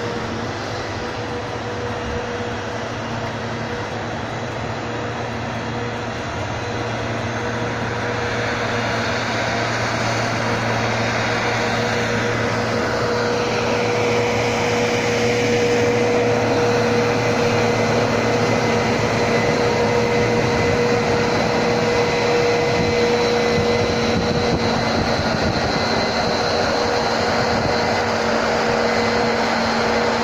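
Tractor with a front snow plow blade, its engine running steadily with a steady hum. The sound grows louder as it comes close about halfway through, and a whine falls in pitch as it passes.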